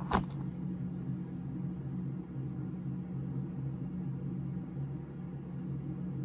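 A steady low electrical hum, with a short tap just after the start.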